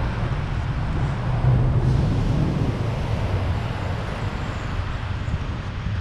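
Steady low rumble of wind buffeting the microphone of a camera on a moving bicycle.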